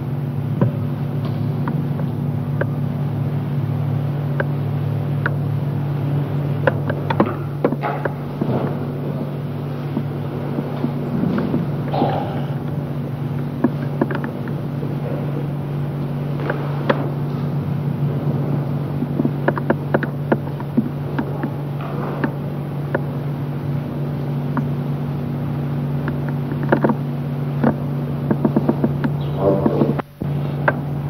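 Steady low hum from an old black-and-white film's soundtrack, with scattered clicks and pops coming and going in clusters.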